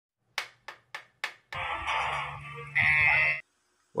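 Four sharp clacks of clapperboard sticks, about three a second, then about two seconds of a louder, busier noise that cuts off abruptly.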